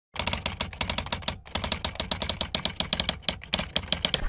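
Rapid keystroke clicks of typing, with a brief pause about a second and a half in.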